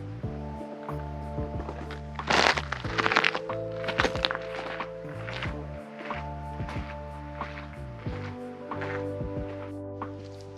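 Background music with sustained chords that change every second or two over a light, regular percussive beat, swelling with a louder noisy passage a little over two seconds in.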